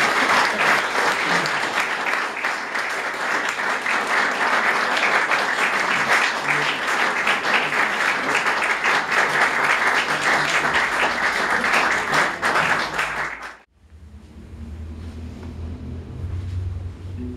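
Audience applauding steadily after a classical guitar duo piece, cut off abruptly about three-quarters of the way through, leaving a much quieter stretch.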